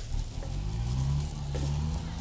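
A motor's low hum rising in pitch and then holding steady, over the faint wet rustle of noodles and vegetables being tossed by gloved hands.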